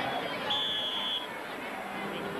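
Stadium crowd noise with a single short, steady, high-pitched whistle blast about half a second in, lasting under a second: a football referee's whistle.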